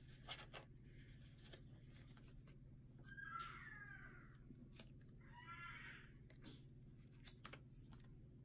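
Near silence with a low hum, broken by scattered faint ticks of hands handling paper sticker sheets and a pen on a desk. Two faint high-pitched calls sound in the background, about three and five and a half seconds in, of unclear source.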